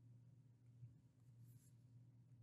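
Near silence: a faint steady low hum, with a faint, brief scratch of a stylus stroke on a tablet screen about one and a half seconds in.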